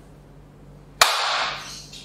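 A man's sudden, loud, breathy outburst: a forceful exhale with a sharp start about a second in, no voiced pitch, fading within a second.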